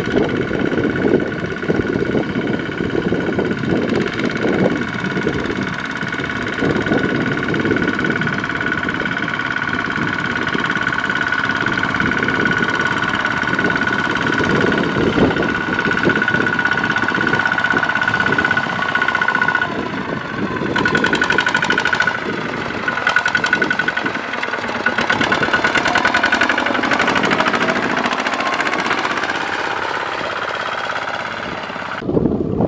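Kubota RT155 single-cylinder diesel engine of a two-wheel walking tractor running steadily under load as it pulls a loaded trailer. Its rapid firing beat comes through more plainly in the last third.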